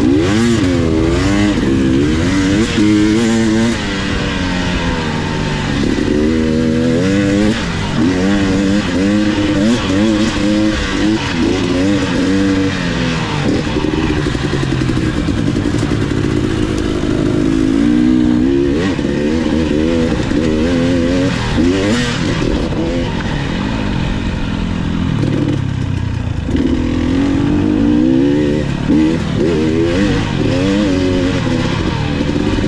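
Dirt bike engine running under load on a dirt trail, its pitch rising and falling again and again as the throttle is opened and closed.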